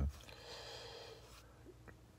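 A man's soft breath out, lasting about a second, followed by a faint click near the end.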